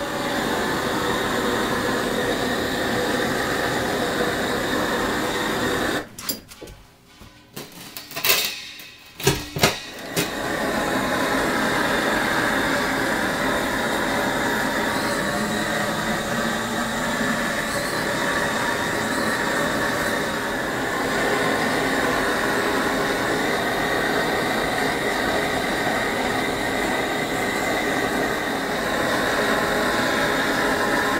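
Gas blowtorch burning with a steady hiss, dropping out for a few seconds about six seconds in, with a few sharp clicks in the gap, then burning steadily again.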